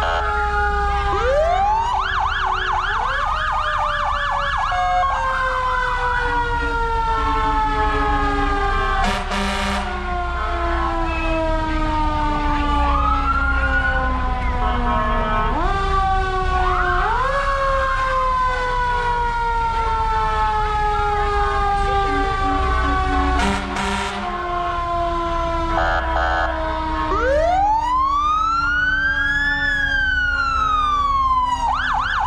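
Several emergency-vehicle sirens sounding at once: overlapping wails that sweep up and slowly fall, with a fast yelp a couple of seconds in and a low engine rumble underneath. Two short, loud blasts break in, about nine seconds in and again past twenty-three seconds.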